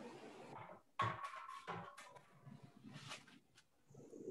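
Faint handling noises: rustling with a few light knocks, the sharpest starting about a second in and a couple of clicks around three seconds.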